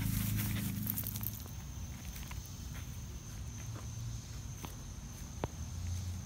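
Footsteps of a person walking over grass and wood-chip mulch, with a few faint snaps of twigs. A thin, steady high insect drone comes in about a second and a half in.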